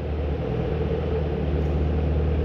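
The supercharged 6.2-litre LSA V8 of a 2013 Chevrolet Camaro ZL1 idling steadily with a low, even sound.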